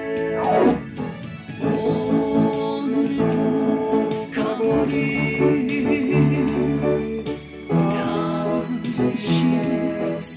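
Music: an upright piano played by ear along with a backing of guitar and a singing voice, the melody wavering and sliding, with a falling slide about half a second in.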